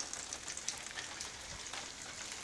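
Rain falling outdoors: a steady, fine patter of many small drops.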